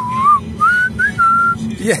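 A person whistling a short wavering tune: a wobbling note, then a few higher notes, the last one held, over the steady low hum of a car cabin.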